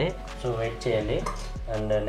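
Background music with faint clinks and knocks of miniature clay and brass cooking vessels being handled.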